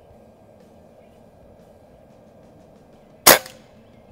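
A single shot from a .22 Beeman QB Chief pre-charged pneumatic air rifle a little over three seconds in: one sharp crack with a short ringing tail.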